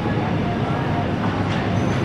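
Shopping cart wheels rolling over a hard store floor, a steady rattling rumble.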